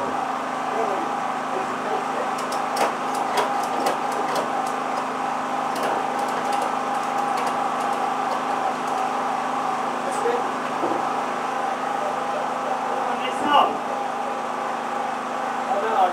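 Race car engine idling steadily, with a run of sharp clicks a few seconds in.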